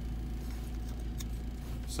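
Steady low rumble inside a car cabin, with a few light clicks as the small plastic and metal parts of a disassembled GPS roof antenna are handled.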